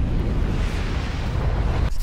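Explosion sound effect: a dense, bass-heavy rumble that carries on steadily and cuts off suddenly near the end.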